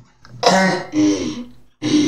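A person coughing twice, the coughs about half a second apart, from someone who is ill.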